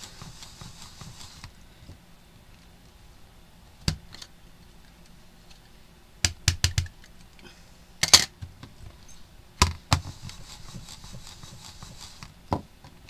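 Sharp clicks and knocks from stamping with a MISTI stamp positioning tool and an ink pad: single knocks about four and eight seconds in, a quick run of taps about six seconds in, and two more near ten seconds.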